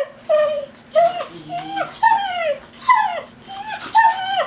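Whippet–lurcher cross dog whining in about six short, high-pitched cries, most falling in pitch: she is crying to be taken for a walk.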